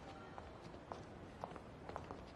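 Faint footsteps on a hard, polished floor, about two steps a second, over a low steady background hum.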